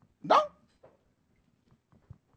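A man's voice saying one short, emphatic word with a rising pitch, then quiet with a few faint clicks.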